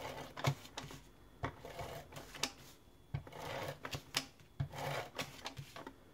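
A tape-runner adhesive dispenser laying adhesive along the edges of a card panel: a series of short whirring strokes, each starting or ending with a sharp click.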